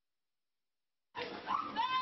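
Dead silence for about the first second, then a woman crying out in high, rising, wailing cries.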